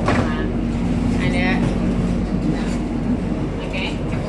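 Steady low hum and rumble inside an airport rail-link train carriage, with faint voices.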